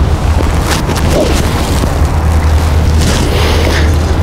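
A steady low rumble with a faint hiss above it, typical of wind buffeting the microphone outdoors.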